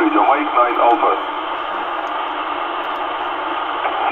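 Amateur radio transceiver receiving upper sideband on the 10-metre band (28.432 MHz): a voice breaks off about a second in, leaving steady band hiss from the speaker.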